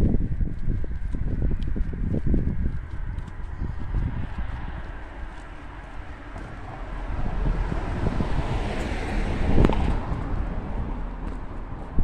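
A car drives past on the road, its tyre and engine noise swelling to a peak about nine and a half seconds in, then fading. Before it, low rumbling thumps from walking and wind on the microphone.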